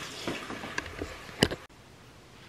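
Faint handling noise with a few small ticks and one sharper click about one and a half seconds in, after which the sound drops suddenly to quiet room tone.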